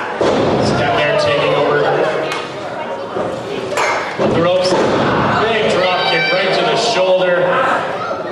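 A wrestler's body slammed onto the wrestling ring's mat, a heavy thud just after the start, with more thuds a few seconds later, amid shouting voices.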